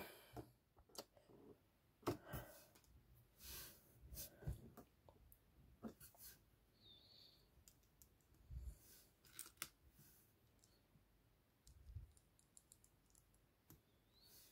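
Faint, scattered clicks and taps of small plastic LEGO bricks being handled and pressed together, with long quiet gaps between them.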